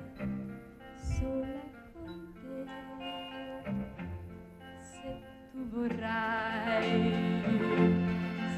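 Orchestra accompanying a young woman singing a slow Italian pop ballad. The music swells and grows fuller about six seconds in.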